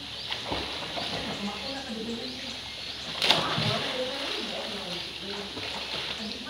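Light splashing from a child swimming in a pool, under faint voices and birds chirping, with one sharp, loud splash-like crack about three seconds in.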